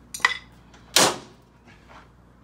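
Two hammer blows, about a second apart, on a steel pry bar wedged behind a spot-welded car engine-mount bracket, striking to break the bracket loose from the chassis. The first blow rings with a metallic tone; the second is louder.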